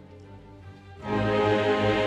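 Orchestra playing classical music: a soft, sustained passage of held notes, then about a second in the full orchestra comes in loudly and keeps sounding.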